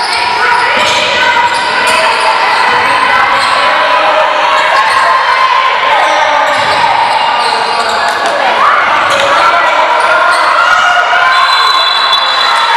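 Basketball game sounds in an echoing gym hall: the ball bouncing on the court while players and coaches call out. A short high steady tone near the end, as play stops, fits a referee's whistle.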